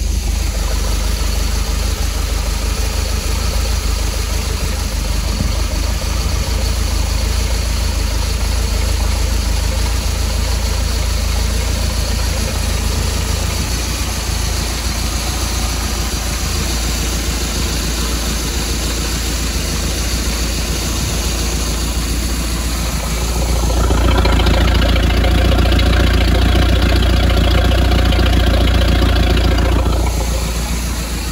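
180-horsepower MerCruiser sterndrive engine running steadily at idle, out of the water on a hose hookup. It grows louder about 23 seconds in and stays louder.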